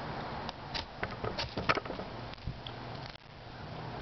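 Spine of a small fixed-blade knife struck down a fire steel several times in quick succession, a burst of short sharp scrapes about half a second in, lasting around a second, to throw sparks into tinder.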